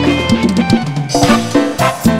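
Live band playing an instrumental passage, the drum kit to the fore with snare and bass-drum hits over a bass line and sustained chords.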